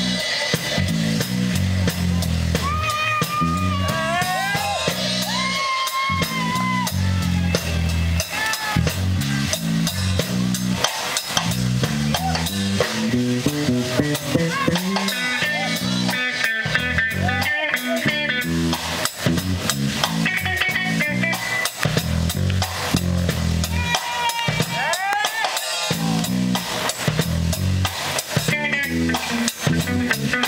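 Live instrumental rock jam: drum kit with snare and bass drum, electric bass, and an electric guitar playing lead lines that bend and glide in pitch.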